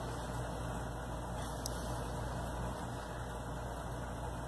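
Steady low hum with a faint hiss of background noise, unchanging throughout, with one faint tick about one and a half seconds in.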